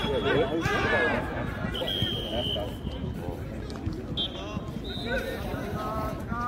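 Men's voices calling out and talking over a background of crowd chatter on an open sports field.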